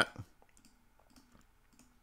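A man's voice trails off at the start. The rest is near silence, with a few faint, scattered clicks.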